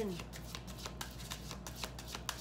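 A deck of tarot cards being shuffled by hand, overhand: a quick, uneven run of soft card clicks, several a second.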